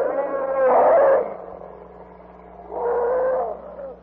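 Elephant trumpeting, a radio-drama sound effect standing for a herd of mastodons: two loud calls, the first about a second long at the start, the second shorter, about three seconds in.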